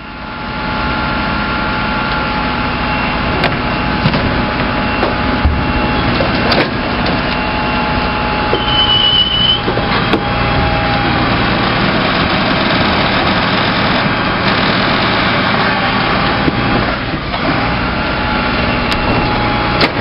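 Rear-loading refuse truck's hydraulic packer running under heavy load, the compaction blade struggling to push wooden pallets into an overfull body, with a few sharp cracks.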